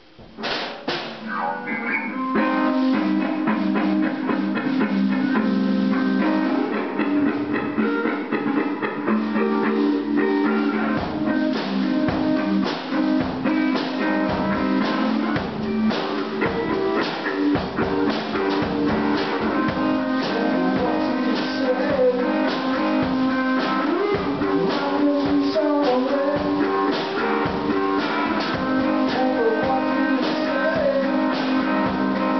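Electric guitar and drum kit playing together in a loud band jam that kicks in abruptly just after the start, the guitar played on its neck pickup.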